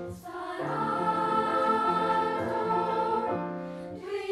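Children's chorus singing a long held chord in parts, over evenly repeated low piano notes. The voices come in together about half a second in, after a brief break.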